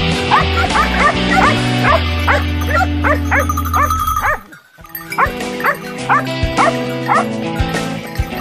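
A pack of Maremma hounds (segugi maremmani) yelping and baying in quick succession around a downed wild boar, over steady background music. The sound drops out briefly about halfway, then the yelping and music resume.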